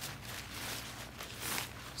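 Crumpled nylon inflatable fabric rustling and swishing as it is pulled and spread out over grass, in soft irregular swells with a slightly louder swish about one and a half seconds in.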